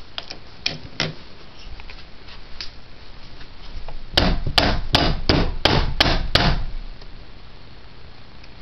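A few faint clicks, then a quick run of about eight sharp knocks, roughly three a second, lasting a couple of seconds.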